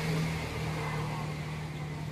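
A steady low hum of a running engine or motor, holding one pitch.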